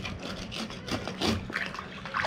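Water splashing and dripping at the waterline as a barnacle-covered boat hull is scrubbed by hand, with a few short scrubbing strokes.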